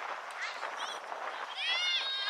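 Shrill, high-pitched shouts and calls from people at a youth soccer match, with one long yell that rises and falls in pitch near the end.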